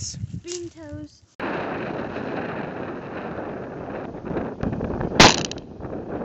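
Laughter and a voice, then steady wind noise on the microphone, with one sharp loud bang a little after five seconds in.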